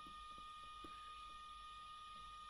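Near silence: room tone with a faint steady whine.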